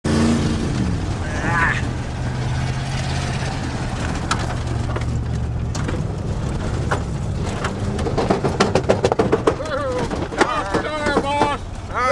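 Dirt-track bomber race car's engine running under load, heard from inside the cabin, its pitch dropping in the first second and then holding steady. Sharp clicks and knocks are scattered throughout. A voice calls out loudly over the engine in the last few seconds.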